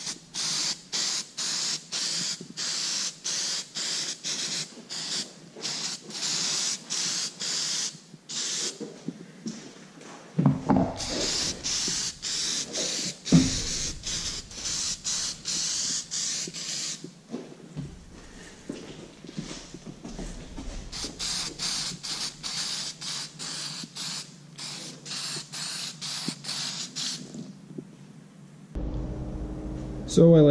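Aerosol spray can spraying a coating onto a rust-pitted brake drum in many short hissing bursts, about one a second. A few knocks come around ten to thirteen seconds in, the loudest a sharp knock near thirteen seconds.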